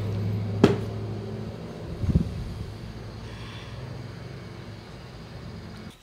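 Handling noises: a sharp click under a second in and a low thump about two seconds in, over a low steady hum that fades away.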